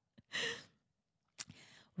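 A woman's short audible breath or sigh, about a third of a second in, then a single brief click about three-quarters of the way through.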